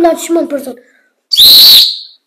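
A brief voice, then about a second and a half in a loud, piercing whistle that lasts under a second and bends slightly up and back down in pitch.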